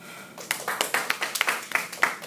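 Applause from a few people: separate, uneven hand claps, several a second, beginning about half a second in.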